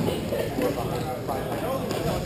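Players' voices calling out across an indoor rink, over the clatter of hockey sticks and play on the rink floor, with a sharp knock at the start and another near the end.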